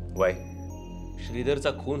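A man speaking Marathi dialogue in short phrases over a soft, steady background music score.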